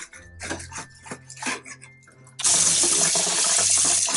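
Kitchen tap turned on about halfway through, water running hard in a steady rush over a freshly skinned white sucker fillet being rinsed under it.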